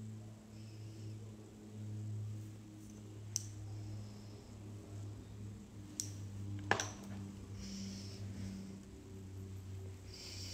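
Quiet room with a steady low hum, and a few light clicks of makeup tools and products being handled and set down on a desk, two of them close together past the middle.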